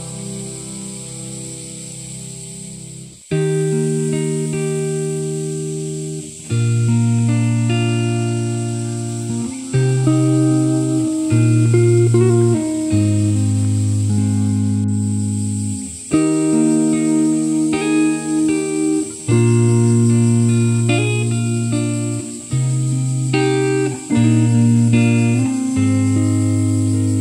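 Instrumental background music: soft sustained notes, then a fuller passage of plucked notes entering sharply about three seconds in, with chords changing every second or two.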